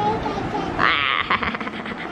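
A young child laughing: a high-pitched squeal of giggling about a second in, then a few short breathy laughs.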